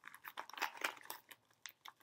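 Yellow paper mailer envelope being pulled open by hand: a run of irregular, sharp paper crackles and crinkles.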